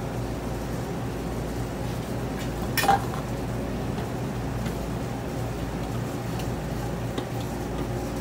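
A metal spoon scraping and clinking in a stainless steel bowl as oil and garlic are spooned out, with one sharper clink a little before three seconds in and a few faint ticks later. A steady machine hum of kitchen equipment runs underneath.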